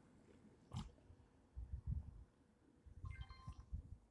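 Faint low thuds of footsteps and handling of a GNSS survey pole while walking, then about three seconds in a short electronic beep from the handheld data collector as a line vertex is recorded.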